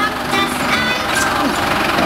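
Tractor engine running steadily at low speed, mixed with crowd chatter.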